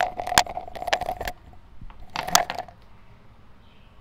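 Metallic clinking and rattling: a quick run of sharp clicks with a ringing note, then quiet, and a second short clatter a little over two seconds in.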